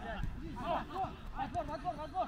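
Several footballers' voices calling out to each other, indistinct and distant, in short calls throughout.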